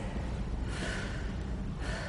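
A woman breathing hard from the exertion of sit-ups: two forceful breaths about a second apart.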